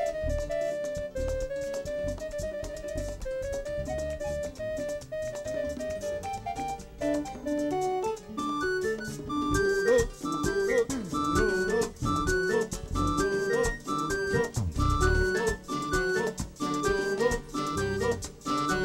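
Live merengue band playing an instrumental passage: a keyboard melody over bass and percussion, turning into quicker, busier keyboard chords from about eight seconds in.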